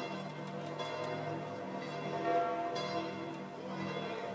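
Church bells ringing steadily and faintly, with no band playing.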